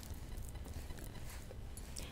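Quiet room tone with a steady low hum.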